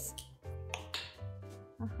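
Soft background music with sustained notes over a slow-changing bass line, with a few light taps of a small knife cutting carrot on a wooden board.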